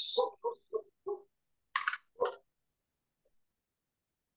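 A dog yapping: four quick short yaps, then a brief hiss and one more yap.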